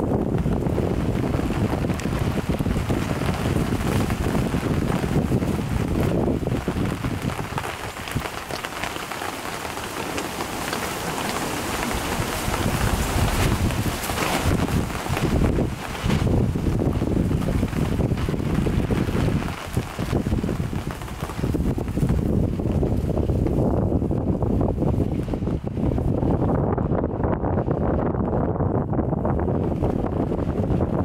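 Wind buffeting the microphone in gusts, over a steady hiss of rain; the hiss thins out near the end.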